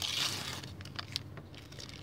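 A foil Panini sticker packet being torn open and crinkled by hand. The rustle is loudest at the start and fades, with a few small sharp ticks about a second in.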